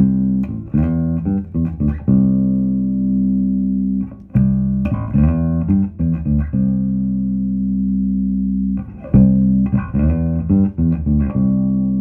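Electric bass guitar played through a Behringer Ultrabass BX4500H 450-watt bass amp head while its gain control is being demonstrated. Short runs of plucked notes alternate with long held, ringing notes.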